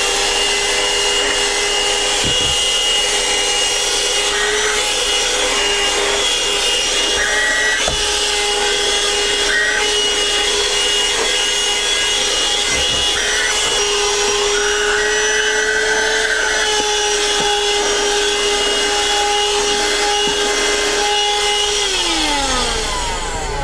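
AGARO Extreme handheld wet-and-dry car vacuum cleaner running at full speed, its motor giving a steady whine over the rush of air, as it sucks dirt off a car floor mat. A few scattered ticks sound through it, and its pitch shifts slightly partway through.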